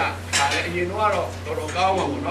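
A man's voice preaching loudly and with animation into a microphone, with a steady low electrical hum underneath.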